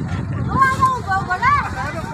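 Villagers' voices: a high voice calls out in rising and falling arcs, loudest about one and a half seconds in, over a steady low rumble.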